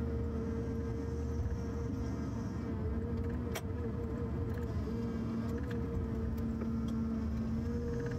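Forestry harvester's engine and hydraulics running steadily, heard from inside the cab: a low drone with a steady hum that drops out and returns now and then. There is a single sharp click about three and a half seconds in.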